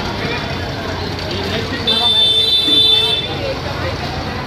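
A vehicle horn sounds once, a steady high-pitched tone lasting about a second, over background street traffic and voices.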